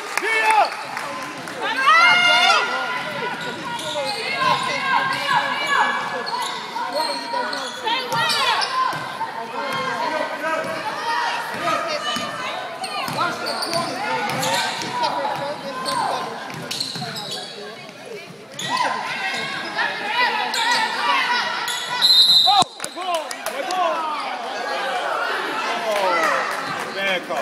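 Sounds of a basketball game in an echoing gym: the ball bouncing on the hardwood, sneakers squeaking, and players and spectators calling out. About 22 seconds in, a short loud whistle blast stops play for a foul, leading to free throws.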